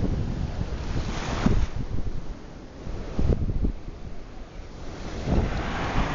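Small waves washing up on a sandy beach, with wind buffeting the microphone; the surf swells louder about a second in and again near the end.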